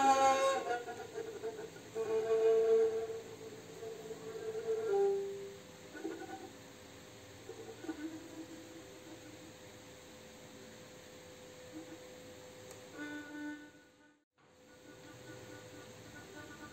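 Cretan lyra bowed in a slow solo melody: a few louder held notes in the first five seconds, then quieter phrases. The sound breaks off briefly about fourteen seconds in.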